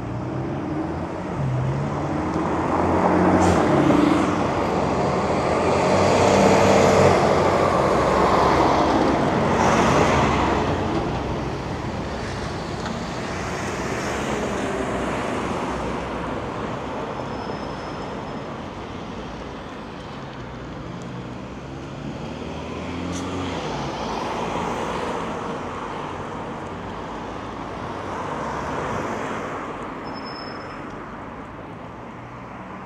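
Cars passing on a street, their tyre and engine noise swelling and fading several times. The loudest pass comes in the first ten seconds, with quieter ones later.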